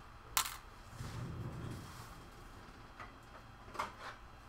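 A sharp click about half a second in, then a low rustle for about a second and two lighter knocks near the end: hand handling and movement at a workbench, a model being lifted off a shelf.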